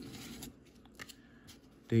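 Baseball cards being slid off a stack one at a time in gloved hands: a soft rustle of card stock and glove, then quieter scraping and a light tap about a second in.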